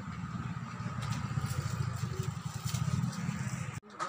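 A small engine running steadily at low speed, with a faint steady whine above it. The sound cuts off abruptly near the end.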